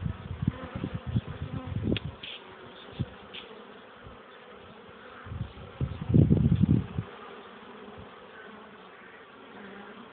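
Many honeybees buzzing steadily in a continuous hum. Low rumbles on the microphone come in the first couple of seconds, with a louder one about six seconds in.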